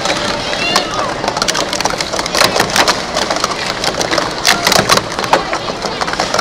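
Plastic sport-stacking cups being rapidly stacked and unstacked on a stacking mat: a quick, uneven run of light clicks and clacks.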